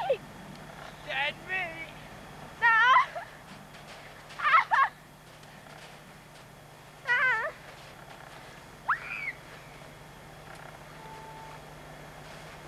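Several short, high-pitched shrieks and squeals of laughter from people, each a wavering cry, about six of them in the first nine seconds, over a steady low hum.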